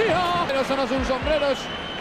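Spanish-language football TV commentary: the commentator's excited, drawn-out, sing-song voice calling the play, with a couple of low thuds about a second in.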